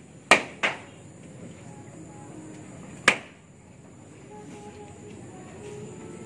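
Three sharp knocks on the roof: two in quick succession near the start and a single one about three seconds in.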